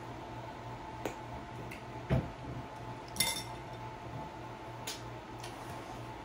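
A few light knocks and clinks of dishes and utensils on a table, about a second apart, the one about three seconds in ringing briefly. A faint steady hum lies under them.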